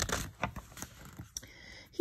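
Paper pages of a picture book being handled and turned: a brief rustle with a few soft clicks and scrapes.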